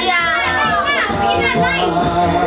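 A group of children chattering and calling out over music playing.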